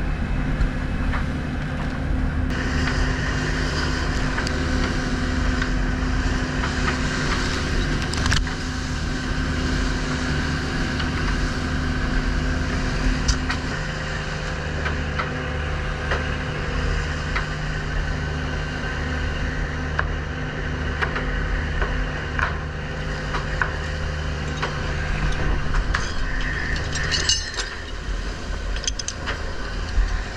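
Fishing boat's engine and deck machinery running steadily under sea-water wash and spray, with scattered clicks and knocks; one hum drops out about halfway through and another near the end.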